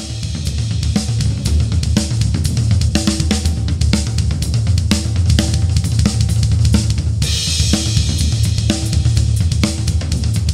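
A full drum kit played fast and without a break: a busy bass drum under snare, toms and cymbals. A brighter cymbal wash comes in about seven seconds in.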